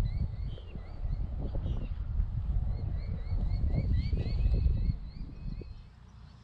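Wind buffeting the microphone: a low, uneven rumble that dies away near the end. Over it, a faint run of short, high, rising chirps repeats about three times a second.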